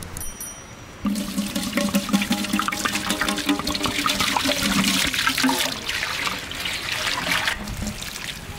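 Water pouring and splashing into a metal bowl of rice. It starts suddenly about a second in and stops shortly before the end.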